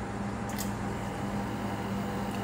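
Steady hum of running workshop machinery, with a few constant tones under an even low noise, and a brief high tick about half a second in.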